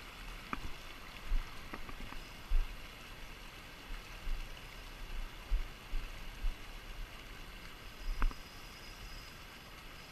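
Steady rush of a fast-flowing river current, with irregular low thumps and a few faint clicks over it.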